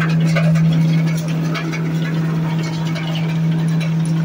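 Belt-driven coconut husk shredder running on its electric motor with a steady low hum, scattered crackling ticks over it as husk fibre is fed in and shredded.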